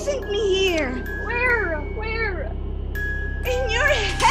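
A woman's voice wailing in drawn-out cries that rise and fall in pitch, about four of them, over a steady music drone.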